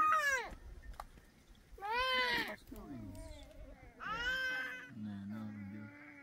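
An animal calling three times, about two seconds apart, each a high cry that rises and then falls in pitch. A low steady hum follows near the end.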